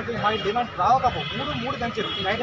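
Speech: a man talking into a handheld microphone, his voice rising and falling in pitch.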